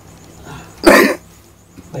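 One loud, short cough from a man about a second in.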